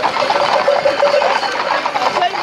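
Dense, steady clatter and ticking of many bicycles ridden together along a road, mixed with crowd noise.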